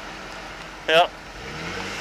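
Jeep Wrangler engine running under load while the Jeep reverses in mud, the revs rising near the end. It is working the Jeep back off a spot where it hung up on its rock guard.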